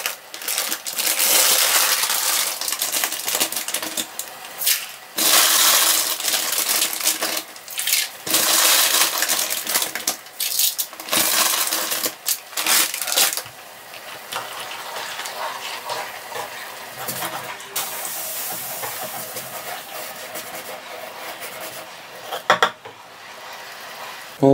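Dry pasta being poured from a bag into a pan of boiling water, rattling in four or five loud runs over the first dozen or so seconds. After that comes a quieter, steady hiss of the boiling pot, with a few clicks near the end.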